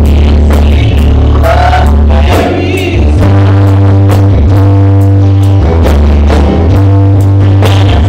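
Church choir singing a gospel song, loud, accompanied by keyboard, a deep bass line and a drum kit keeping a steady beat.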